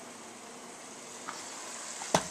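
Faint, steady sizzle of cooked taco-seasoned ground beef in a pot on the stove, growing a little louder near the end.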